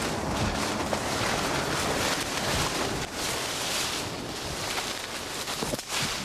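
Steady rustling and brushing noise as people push through dense stinging nettles, with clothing rubbing close against the microphone.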